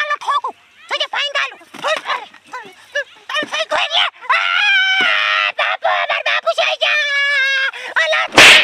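High-pitched voices talking and shouting, with a long drawn-out wail about four seconds in and another held cry near the end.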